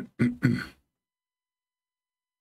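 A man clearing his throat in three quick, short bursts within the first second.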